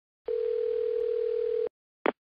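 Telephone ringing tone heard down the line: one steady, even-pitched tone of about a second and a half, the call ringing out before a voicemail greeting answers.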